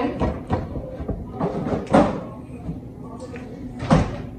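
A few sharp knocks and thuds of kitchen handling, the loudest just before the end, over low indistinct talk.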